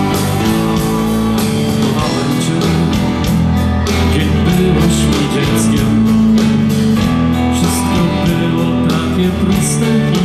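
Live rock band playing: electric bass, drum kit and keyboards, with a steady drum beat and cymbal strokes.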